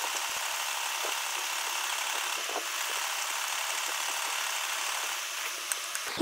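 Sewing machine running steadily as it stitches around the edge of a fabric circle, stopping shortly before the end.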